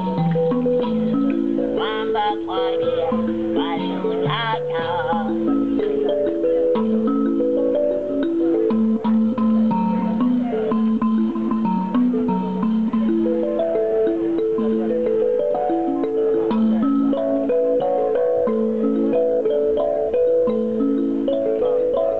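Toy music: a tune of quick stepped notes played on a small toy instrument. Warbling, bird-like whistles come in about two seconds in and again about four seconds in.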